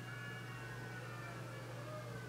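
Quiet room tone: a steady low hum with a few faint, slowly wavering high tones in the background.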